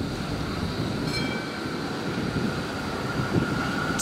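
Melbourne E-class tram pulling away on its rails with a steady running rumble and a thin, steady high whine. A brief higher tone sounds about a second in.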